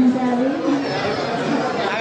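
A person speaking, with crowd chatter behind.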